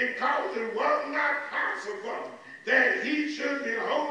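A man preaching through a microphone in a raised, strained, half-chanted voice, with a short pause about two and a half seconds in.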